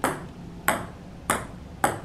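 Small hard balls dropped one at a time, each landing with a sharp click that rings briefly: four clicks a little more than half a second apart.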